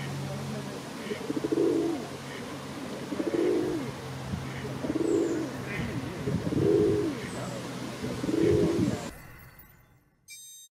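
Feral pigeons cooing: a low, throaty coo repeated about every one and a half to two seconds. It comes from a male puffed up and circling a female in courtship display. The cooing fades out near the end.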